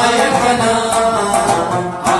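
A man singing a Pashto folk song while plucking a rabab, the voice holding and bending long notes over the quick plucked strings.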